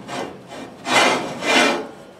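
Cloth rubbing a thin coat of seasoning oil onto the handle of a cast iron skillet, in a few dry strokes: a short one near the start and two louder ones later on.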